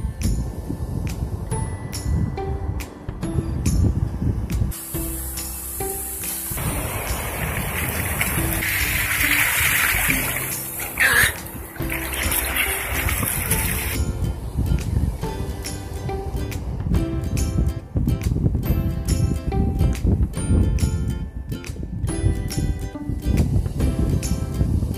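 Background music with a beat. About a third of the way in, a loud rush of splashing seawater covers it for several seconds, then the music goes on alone.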